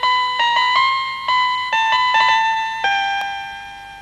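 A short TV station ident jingle: a melody of single notes on an electronic keyboard, each struck sharply and then fading. About three seconds in, a lower note is held and slowly dies away.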